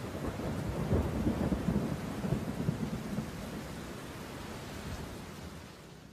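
Thunder and rain: rumbling with irregular low swells over a steady rain-like hiss, fading out gradually near the end.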